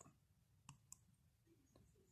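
Near silence, with two faint ticks close together as a ballpoint pen writes on a textbook page.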